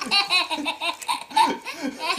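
Baby laughing in short, repeated belly-laugh bursts.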